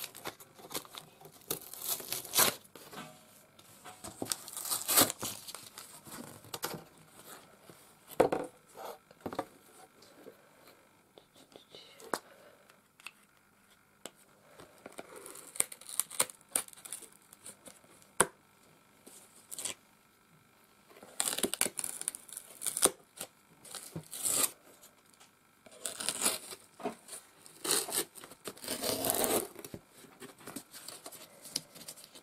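Thin paper facing being peeled and torn off corrugated cardboard in short, irregular rips, laying bare the ribs beneath. It goes quieter for a while in the middle, then comes in denser runs of rips toward the end.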